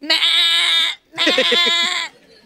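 A woman imitating a goat with her voice: two long, wavering bleats, one after the other.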